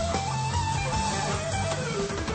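Electric lead guitar solo in a live rock band: held notes that bend up and slide back down, over bass guitar and drums.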